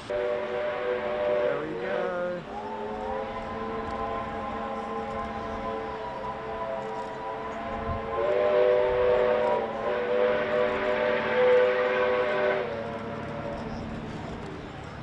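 Steam locomotive chime whistles sounding long, held multi-note blasts: a short chord that sags in pitch as it closes about two seconds in, a long steady chord after it, then a louder chord from about eight seconds in that cuts off shortly before the end.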